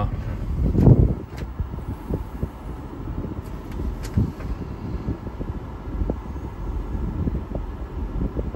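The 6.4 Power Stroke V8 turbo-diesel of a 2008 Ford F550 running, heard from inside the cab as a steady low rumble with scattered small knocks and rattles. A louder low thump comes about a second in.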